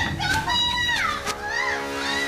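A cat meowing: several high, arching calls, one long and then shorter ones, over background music with a sustained chord.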